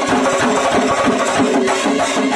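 Kerala chenda drums played in fast, dense strokes together with a brass band holding a melody, a chenda-and-band fusion.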